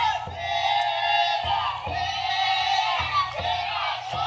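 A team of festival bearers chanting and shouting together around a futon-daiko (taikodai) float, with low, irregular booms of the float's taiko drum underneath.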